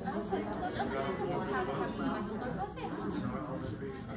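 Many people talking at once in a large room: overlapping conversations blend into a steady chatter with no single voice standing out.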